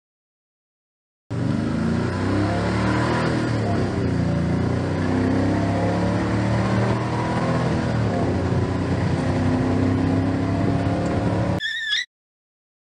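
Motor vehicle engine sound effect, running and revving with a slowly shifting pitch. It starts abruptly about a second in out of complete silence and cuts off just before the end.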